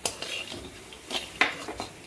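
Spatula stirring a poha and jaggery mixture in a metal pan, with a few sharp knocks and scrapes against the pan: one right at the start and a couple more after about a second.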